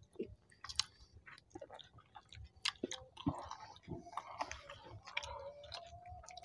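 Close-miked chewing of paratha and chicken curry: irregular wet mouth sounds with many short clicks.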